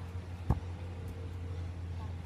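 A single sharp knock on the phone's microphone about half a second in, from the phone being handled, over a steady low hum.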